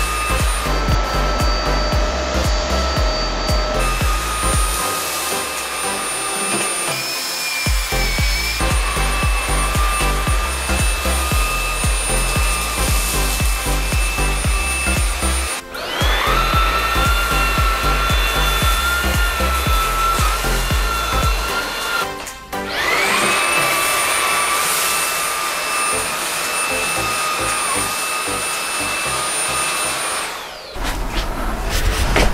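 Xiaomi Mi Handheld Vacuum Cleaner 1C cordless stick vacuum running with a steady high motor whine, over background music with a steady beat. About halfway through, and again about three-quarters through, the whine drops out briefly and spins back up.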